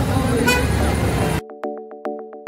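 Busy street noise of crowd and traffic with a brief toot about half a second in. About one and a half seconds in it cuts abruptly to music of short, evenly struck plucked notes.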